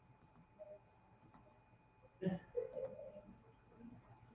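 Computer mouse clicks, several quick pairs of small clicks, while a screen share is being set up; a brief faint low mumble a little past halfway.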